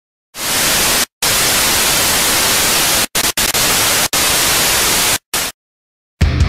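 Loud hiss of white-noise static that fades in and is then chopped on and off abruptly: a short dropout about a second in, a quick stutter of cuts around three seconds, and a last short burst before it stops about half a second before the end.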